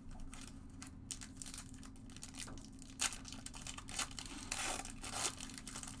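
Foil wrapper of a pack of football trading cards crinkling and tearing as it is opened by hand, in irregular crackles that are strongest about three seconds in and again between about four and a half and five and a half seconds. A faint steady hum runs underneath.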